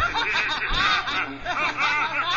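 Girls laughing hard, in quick high-pitched peals.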